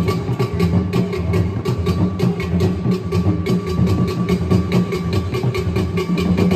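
Traditional drum ensemble playing: a dense low drum sound under even, rapid strikes about five or six a second, with a faint steady ringing tone above.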